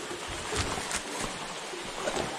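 Shallow river water running steadily over stones in a riffle, with a few light knocks.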